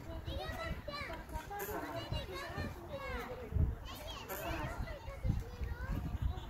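Children playing, their high voices calling and chattering at a distance with no clear words, and a low thud on the microphone about three and a half seconds in.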